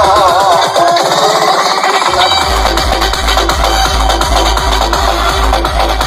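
Electronic dance music played loud through a truck-mounted DJ speaker stack. The bass cuts out about a second in under a rising sweep, then a heavy, steady bass beat comes back in after about two seconds.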